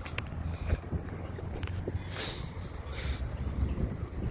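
Wind on a phone microphone outdoors: a steady low rumble, with two brief hissing gusts about two and three seconds in.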